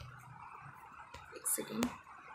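Faint steady background hiss, then near the end a short breathy, whispered vocal sound from a woman, ending in a sharp click.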